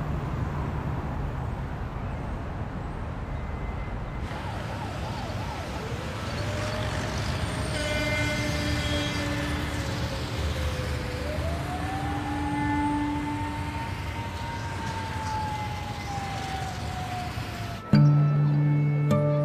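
A steady low rumble like street traffic. From about six seconds in, a siren wails over it, its pitch gliding slowly down, then up, then down again.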